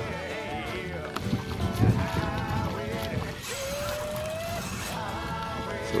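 Quiet background music.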